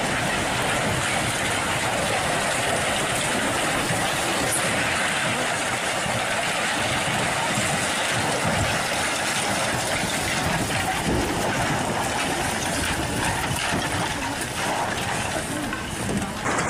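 Continuous loud rumbling and clatter of a strong earthquake, as the mud-plaster walls and roof tiles of old wooden buildings break away and crash into the street, with a few heavier thumps of falling debris.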